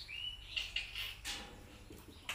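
A small bird chirping faintly a few times, high-pitched, with a few light clicks.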